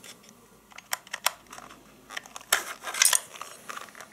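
Handling noise from a vintage plastic hand mixer being turned over in the hands: scattered clicks, taps and rustles, with a cluster of louder clicks a little past halfway. The motor is not running.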